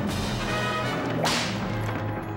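Full orchestral score with sustained low strings, and a single whip lash about a second and a quarter in, a swish that falls sharply in pitch.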